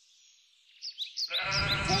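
Sheep bleating over outdoor background noise, with short high chirps, starting about a second in after near silence.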